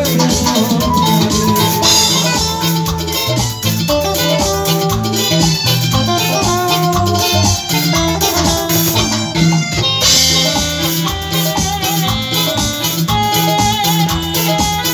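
Live band playing upbeat dance music on drum kit and keyboard with a steady beat; the high end briefly thins out about nine seconds in.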